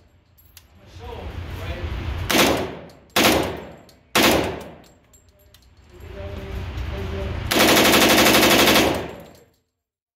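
H&K UMP submachine gun firing at an indoor range. Three separate reports come about a second apart, each with a reverberant tail. Near the end a longer rapid string of shots lasts about a second and a half and is the loudest part.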